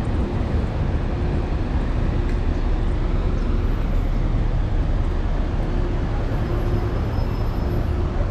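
Steady low rumble of a running motor vehicle with no distinct events, and a faint hum that comes and goes over it.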